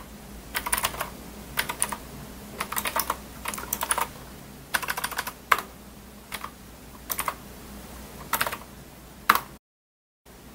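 Typing on a computer keyboard: short runs of quick keystrokes with pauses between them, ending with one sharper key press near the end. The audio then cuts out completely for a moment.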